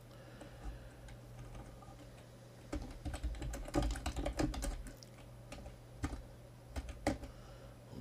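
Typing on a computer keyboard. There is a quick run of keystrokes a few seconds in, then a few separate key presses near the end.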